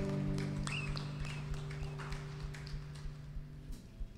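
A worship band's last chord from guitars and bass ringing out and fading away, with scattered light taps and clicks over it. The lowest held note stops shortly before the end.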